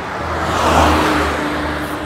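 A car passing on the street: a rush of engine and tyre noise that builds to a peak partway through and then fades, with a steady engine tone under it.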